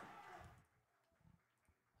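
Near silence: a pause in the radio commentary. Faint background noise fades out about half a second in.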